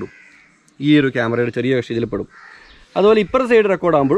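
A man talking in short phrases, with pauses between them.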